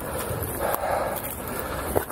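Footsteps crunching on a frosty, iced-over woodland path, about one step a second, with soft thuds under each crunch.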